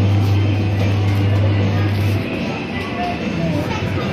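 Coin-operated Thomas the Tank Engine kiddie ride running, with music playing over a steady low motor hum; the hum stops about halfway through.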